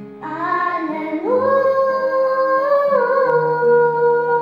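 A young girl singing into a microphone, holding long notes, with acoustic guitar accompaniment.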